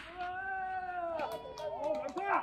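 A long drawn-out call, held about a second with a slowly falling pitch, followed by shorter broken calls near the end.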